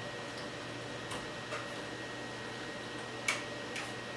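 A few light plastic clicks and taps from a GoPro arm mount being fitted onto the top of a helmet, the sharpest about three seconds in, over steady room tone.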